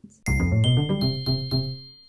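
Short chiming musical jingle: bright bell-like notes enter one after another, about five in all, over a low chord, then ring out and fade.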